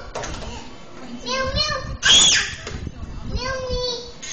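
Toddlers babbling and calling out in high voices, with one loud, sharp squeal about two seconds in.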